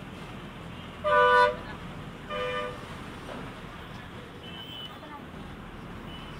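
A vehicle horn tooting twice in street traffic: a loud toot about a second in, then a shorter, quieter one, over a steady traffic hum.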